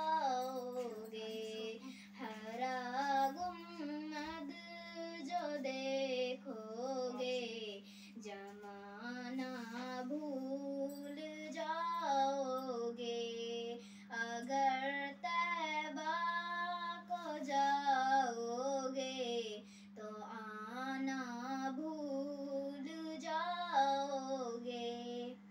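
A young girl singing a Hindi poem in a melodic tune, with no instruments, in phrases broken by short breaths. A steady low hum runs underneath.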